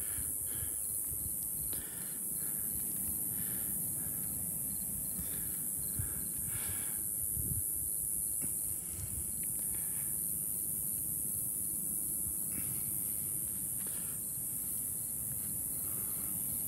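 Steady high-pitched insect chorus, buzzing without a break, over a low rumble of wind on the microphone.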